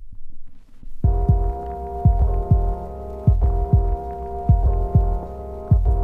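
Instrumental intro of a 1990s hip hop beat: a low rumble fades in, then a held chord that shifts every second or so plays over deep booming bass-drum kicks that drop in pitch.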